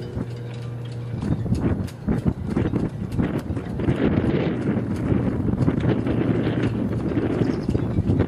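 Yacht halyards and rigging clinking and knocking irregularly against aluminium masts in the wind, many sharp taps over a low wind rumble on the microphone. A steady low hum sounds under it for about the first second.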